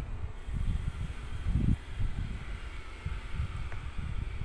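Wind buffeting the microphone: irregular low rumbling gusts.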